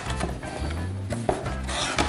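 Hands rummaging in a cardboard cereal box, card and paper rubbing and scraping against the box walls, loudest near the end, over background music with a steady bass line.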